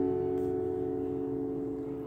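Acoustic guitar's final chord left ringing, its notes slowly fading away.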